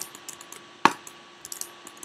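Computer keyboard and mouse clicks: a few light ticks with one sharper click about a second in.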